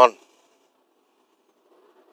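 A man's voice finishing a spoken word at the very start, then near-silent room tone with only a faint steady hum.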